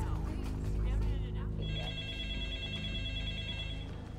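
A telephone ringing with a fast trilling electronic tone, starting a little before halfway through and stopping just before the end, over low sustained film-score music.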